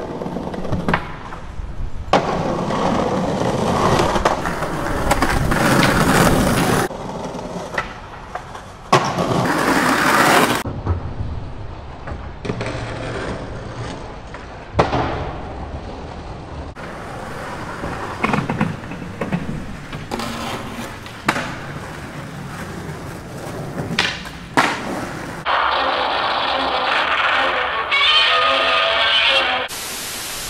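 Skateboard wheels rolling on pavement, broken by sharp pops and landing impacts at intervals, across a series of short cut-together skate clips. Near the end it gives way to music.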